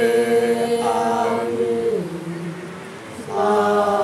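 Several voices singing a Māori waiata together, holding long, steady notes. The singing softens and drops lower about halfway through, then swells again near the end.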